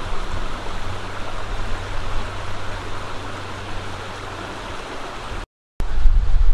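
Shallow creek flowing over rocks, a steady rush of water close by. The sound cuts out completely for a moment about five and a half seconds in.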